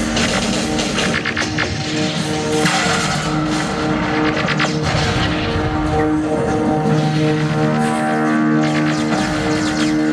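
Film soundtrack played loud over cinema speakers: a synthesizer score of long held notes over a continuous noisy layer of battle sound effects.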